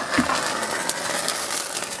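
Magnesium burning on dry ice: a steady hiss with scattered sharp crackles.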